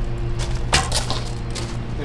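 An archery bow shot: the drawn bowstring is released with a single sharp snap about three quarters of a second in, followed by a few lighter clicks.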